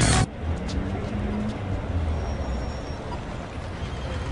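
Electronic dance music stops abruptly a quarter of a second in, leaving outdoor street ambience: a steady low rumble with a faint, brief high chirp near the middle.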